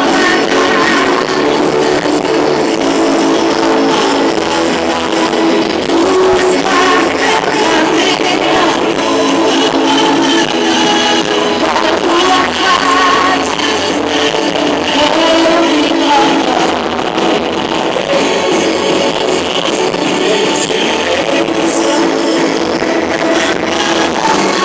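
Live gospel band music played loud through an outdoor stage sound system, recorded from the crowd, running steadily without a break.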